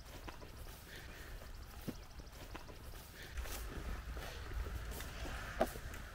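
Quiet footsteps and rustling of someone walking through tall weeds, with a few soft clicks and a low rumble on the microphone in the second half.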